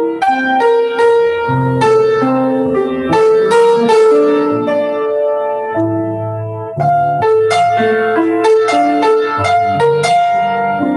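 Grand piano played solo: a melodic theme over chords. Around six seconds in, a low chord is held for about a second before the next phrase begins.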